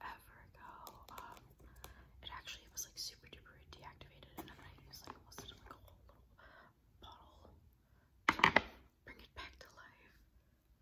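A person whispering in short phrases, with one brief louder burst of noise a little after eight seconds in.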